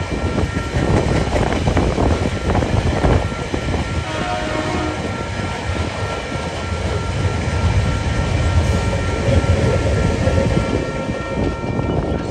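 Freight train of cement hopper wagons rolling past at close range: a steady loud rumble with short wheel clicks over the rails.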